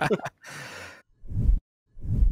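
A man's laughter trailing off, then a long breathy sigh followed by two short low thuds.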